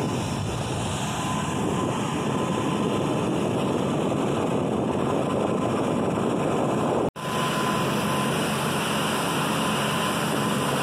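Loud, rushing wind noise on the microphone of a parasailer in flight. After an abrupt cut about seven seconds in, it changes to a steady drone with a thin high whine from the motor of the parasail tow boat below.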